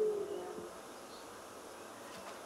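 A lull between spoken words: a faint, slightly wavering low tone fades out in the first half-second, then only faint steady background hiss.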